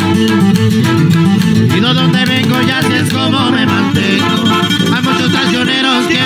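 A live corrido band plays an instrumental passage: tuba bass line, strummed acoustic and twelve-string guitars, and a trumpet melody.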